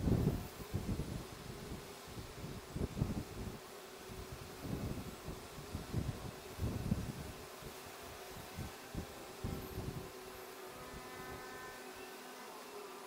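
Wind buffeting a phone microphone in uneven gusts, with a faint steady hum underneath. Near the end a faint buzz with several steady tones comes in.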